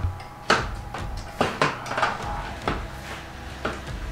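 Avocado being squeezed by a gloved hand in a stainless steel mixing bowl for chunky guacamole, with about half a dozen scattered knocks and clinks against the metal bowl.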